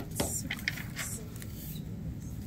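Fresh flower petals being pulled apart by hand, giving a few short, soft crackles and tearing sounds.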